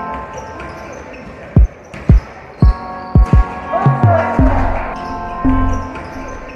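Background music of held tones, cut through by about six loud, deep basketball bounces at uneven intervals. Near the middle, a rising swoosh leads into a long low bass note.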